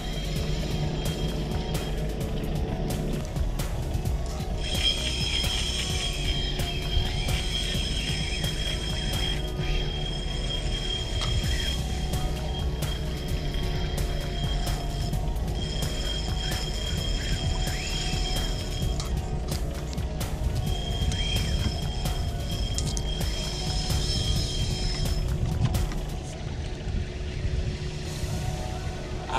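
Fishing reel drag giving line in rapid clicks, rising to a high, steady whine in three runs of several seconds each: a big little tunny on the line is pulling against the rod and taking line.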